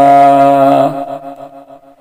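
A man's chanting voice holds the drawn-out last vowel of a line of Gurbani on one steady low note, then fades away about a second in.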